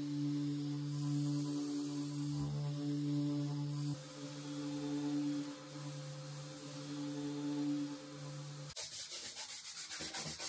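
Random orbital sander running steadily on a wooden tabletop, its motor hum and the dust extractor's hiss drawn through the hose. Near the end it gives way to quick, even strokes of a hand rubbing a cloth over the wood, several a second.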